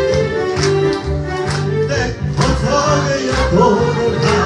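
Electronic keyboard accompaniment to a Hungarian magyar nóta song, with a steady beat and a pulsing bass line. A man's voice comes in singing through the microphone about halfway through.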